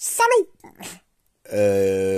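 A person's voice making wordless sounds: a short vocal sound sliding in pitch, then after a brief silence a long, steady, low held 'euh' of hesitation.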